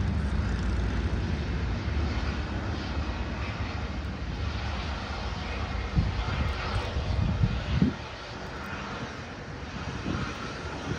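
Jetstar Airbus A320's jet engines at taxi power as it rolls past, a steady rumble that drops away at about eight seconds.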